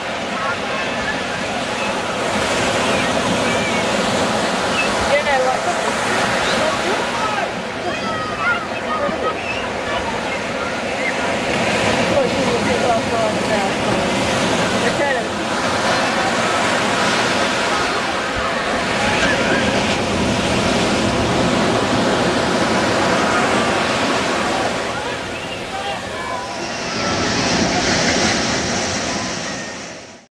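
Surf washing on a beach, with many people's voices and calls mixed in throughout.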